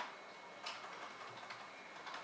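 Faint strokes of a backcombing bristle brush smoothing over rolled hair, with one light tick under a second in.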